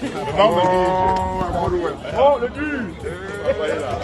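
A person's voice holding one long, steady drawn-out call for about a second, followed by shorter calls or spoken syllables.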